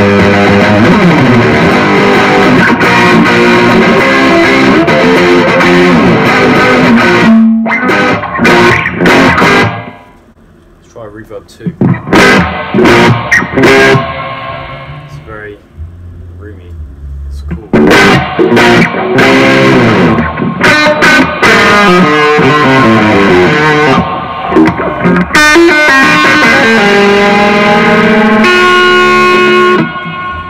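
Electric guitar played through a Blackstar ID:Core 100 digital combo amp with reverb on. Sustained, ringing lines fill the first several seconds. Around ten seconds in the playing thins to scattered notes with fading tails while a setting on the amp is changed, then full playing returns about eighteen seconds in.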